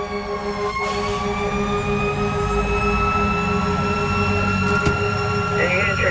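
Fire engine siren heard from inside the cab, its pitch dipping about a second in and then slowly climbing, over the low rumble of the truck's engine.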